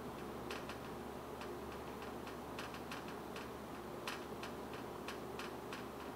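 Marker pen writing on a whiteboard: a faint run of irregular short ticks and taps as the pen strokes go down, over a low room hum.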